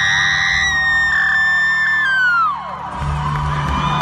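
Live rock concert sound in an arena, recorded from the crowd: a single high note held for about two and a half seconds, then bending down and fading, before the band's bass comes in about three seconds in, with the crowd cheering underneath.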